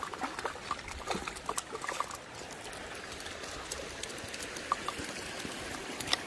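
Hooked brown trout splashing at the water's surface while being fought on a spinning rod: scattered short splashes and drips, busiest in the first couple of seconds, over a steady faint wash of water.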